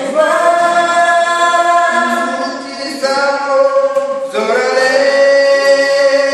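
Singing over an acoustic guitar: two long held notes, each sliding up into pitch at its start, the second beginning about four seconds in.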